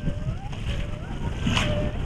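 Wind buffeting an action camera's microphone over open water, a steady low rumble with water rushing beneath. A faint wavering voice runs in the background.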